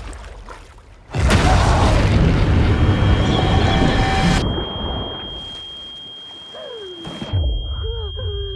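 Film-trailer sound design: about a second in, a sudden loud boom and rush of churning water that cuts off abruptly about three seconds later. Partway through, a high steady ringing tone comes in and carries on into a muffled, underwater-sounding lull. Low booms come back near the end.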